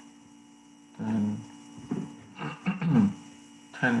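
Steady electrical mains hum in the recording, with a few short vocal sounds from a man breaking in over it. The last of these, near the end, is the word "and".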